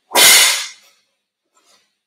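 A single loud, short burst of noise close to the microphone, fading out within about half a second, followed by two faint rustles near the end.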